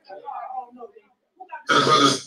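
A man's voice over a microphone: quiet talking, a short pause, then a loud shout about a second and a half in.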